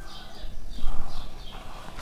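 Marker pen writing on a whiteboard: a series of short, faint squeaking strokes.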